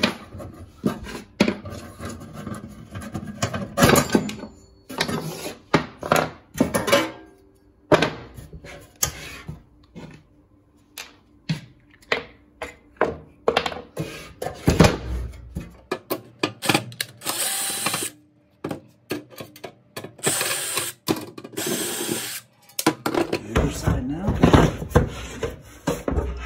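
Cordless drill with a Phillips bit running in several short spells, backing screws out of a fog machine's sheet-metal housing, mostly in the second half. Clicks and knocks of the metal case and its handle being handled come in between.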